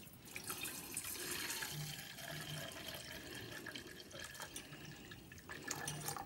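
Brown liquid pouring in a thin stream from a steel pot through a steel mesh strainer into a steel vessel: a faint steady trickle, with a few light clicks near the end.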